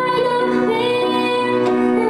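A woman singing, holding long notes over her own upright piano accompaniment.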